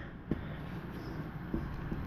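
Faint handling noise from a Palmgren 1-ton arbor press being tipped upright and set down on a bench mat, with two soft knocks, about a quarter second in and again past halfway, over a low steady room rumble.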